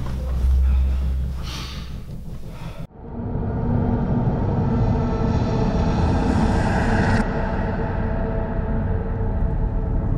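Film score sound design: a low rumble that cuts off abruptly about three seconds in, then a louder dense drone of several steady tones. A high hiss builds over it and stops suddenly about seven seconds in.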